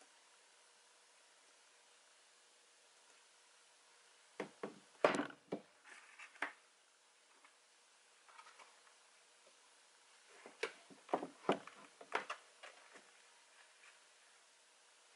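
Stretched canvas being set down on a tabletop and then lifted and tilted again, giving two clusters of light knocks and taps, one about four seconds in and another about ten seconds in, over quiet room tone.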